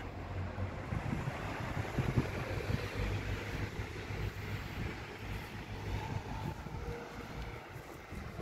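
Car moving slowly along a road: a steady low rumble from the engine and tyres, with some wind noise on the microphone.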